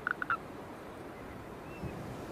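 Natterjack toad call breaking off: three last short rattling pulses right at the start, then the calling stops and only faint wind noise is left.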